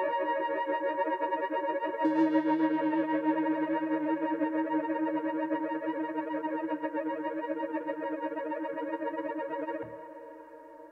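Dave Smith Instruments Tetra analog synthesizer playing a sustained chord patch through added reverb. A new chord starts about two seconds in and is held, then the sound dies away near the end.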